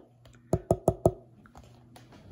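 Fingernail tapping on a metal enamel pin: four quick, sharp clicks, about six a second, starting about half a second in.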